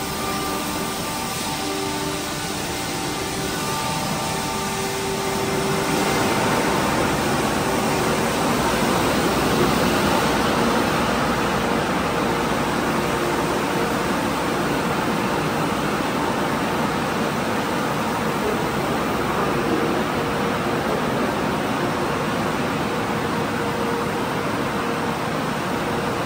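Tunnel car wash running: a steady hiss of water spray and wash machinery, getting louder about six seconds in.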